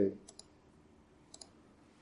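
Two quick double clicks about a second apart, from a computer being operated at the desk, just before the presentation slide advances.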